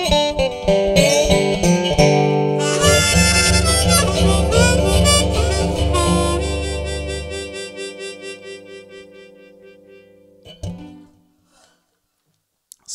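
Harmonica and Dobro resonator guitar play the closing bars of a blues tune, then the last chord rings on and fades away over several seconds. A short knock comes about ten and a half seconds in.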